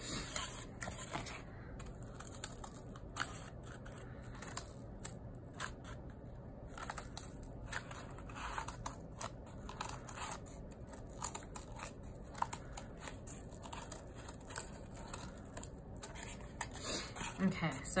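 Scissors cutting slits into the edge of a painted cardboard loom: a series of short snips, irregularly spaced, with pauses between cuts.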